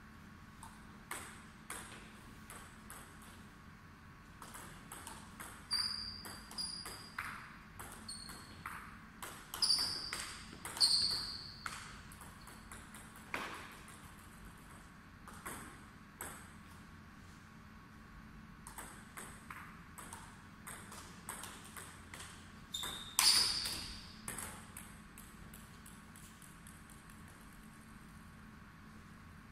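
Table tennis ball clicking off the bats and the table, many bounces carrying a short high ping. The clicks come in two clusters of quick exchanges, the loudest around ten seconds in and again about four-fifths of the way through, with scattered single clicks between.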